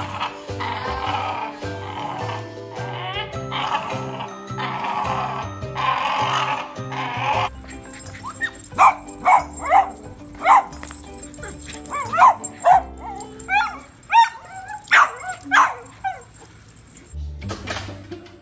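Background music throughout, with a dog barking repeatedly in short, sharp barks from about eight seconds in until near the end.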